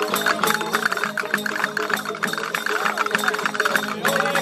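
A Spanish folk band playing an instrumental passage of a parranda: acoustic guitars strumming and a twelve-string Spanish lute playing the tune over clicking wooden hand percussion, in the lively triple-time rhythm of the seguidilla family.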